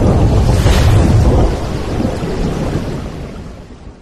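Logo-intro sound effect: a loud, deep rumbling noise with hiss over it that fades away through the second half.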